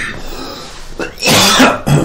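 A person coughing close to the microphone, one loud cough a little over a second in.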